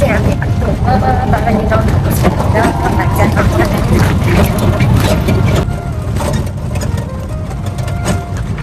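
Auto-rickshaw engine running and its body rattling on the move, heard from inside the cab, with voices over it.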